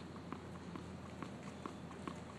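Footsteps of a tennis player in court shoes walking on a hard court, about two short steps a second over a faint steady hum.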